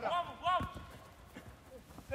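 Two short shouts from players on a football pitch within the first second, with a few soft thuds of feet or ball on turf.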